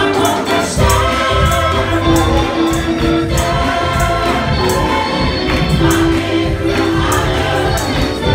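Gospel choir singing together through microphones over instrumental backing with deep bass and a steady percussion beat.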